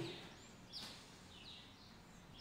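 Birds chirping faintly outdoors, heard through an open door: several short, high chirps, each falling in pitch.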